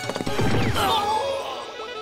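Cartoon crash sound effect over background music: a heavy impact as a character is knocked to the floor, followed by wavering tones that slide downward.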